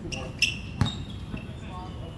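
A basketball shot coming down. The ball strikes the hoop and then bounces on the hard court, giving two sharp knocks under half a second apart; the second is deeper and louder. Players' voices are faint in the background.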